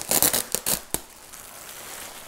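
Plastic bubble wrap crinkling and rustling as it is pulled off a wrapped sculpture, with a quick run of sharp crackles in the first second, then softer rustling.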